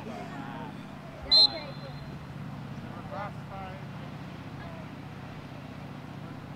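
A single short, sharp whistle blast about a second and a half in, typical of a referee's whistle stopping play, over a steady low hum and faint distant voices.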